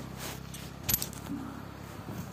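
A single sharp clink with a brief high ring about a second in, over a low steady hum.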